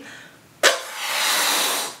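A quick sharp breath in, then about a second of a woman blowing hard into a rubber balloon to inflate it.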